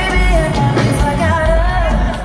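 A female pop singer singing live into a microphone over a full band with drums and bass guitar, amplified through the PA. About a second in she holds a wavering note with vibrato.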